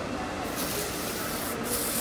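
Fingers rubbing and tousling short hair to work in dry shampoo, a steady rustling rub.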